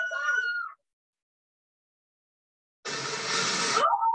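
Sound from a screen-shared online video playing through the meeting audio. A short high, drawn-out voice-like sound is followed by about two seconds of dead silence. About three seconds in comes a second-long burst of loud noise that ends in a rising cry.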